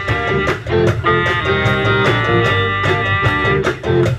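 Live rock band playing an instrumental passage without vocals: electric guitars over a steady drum beat.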